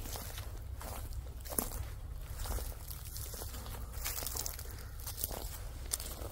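Footsteps walking over dry grass and fallen leaves on an earth embankment: a series of short, irregular steps.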